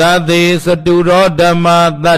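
A Buddhist monk chanting in a steady monotone: each syllable is held on nearly one pitch, with short breaks between.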